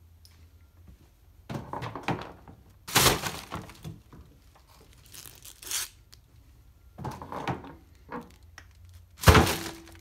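A plastic-wrapped head of greens being handled and dropped into a kitchen trash can lined with a plastic bag: several bursts of plastic crinkling and knocking, and a loud thunk with a brief ring near the end.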